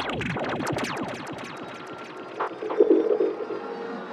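Dark psytrance intro: dense layers of fast falling, chirp-like synthesizer sweeps, with a short buzzing cluster of tones about two and a half seconds in.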